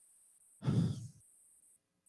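A man's short, breathy sigh-like 'ô' into a handheld microphone, a little over half a second in, lasting about half a second; the rest is near silence.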